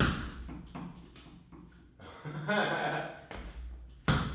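Bare-knuckle or wrapped-hand punches slapping a small inflated Ringside double end bag, a quick irregular run of sharp hits, the first the loudest, as the bag snaps back on its cords.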